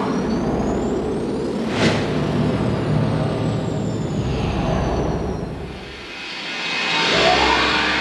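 Soundtrack sound design: a dense, noisy rumbling wash with faint high whistles sliding down in pitch. It thins out around six seconds, then swells back up in a rising whoosh.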